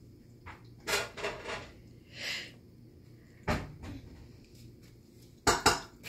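Scattered knocks and clatter of hard household objects: a few light clicks about a second in, a single heavier knock midway, and a quick run of louder knocks near the end.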